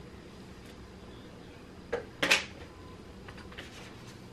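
Quiet room tone with a small click about two seconds in, followed at once by a short, sharp rustle or scrape of objects being handled, then a few faint ticks.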